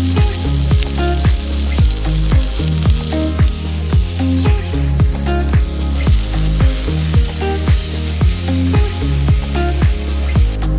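Turkey breasts sizzling as they sear in a hot cast iron skillet, under background music with a steady beat.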